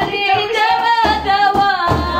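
Women singing a folk song together to the beat of hand-held frame drums.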